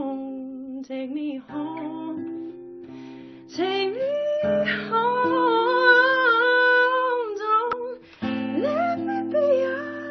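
A woman singing with long held notes over acoustic guitar accompaniment.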